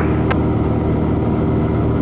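Cessna 182's piston engine and propeller droning steadily in flight, heard from inside the cabin, with one brief click about a third of a second in.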